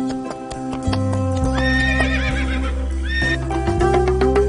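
A horse whinnying over background music with a steady beat: one long quavering neigh from about a second and a half in, then a short second neigh.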